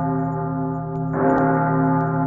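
A deep bell rings with steady overtones and is struck again a little over a second in, the new stroke ringing on over the fading first one.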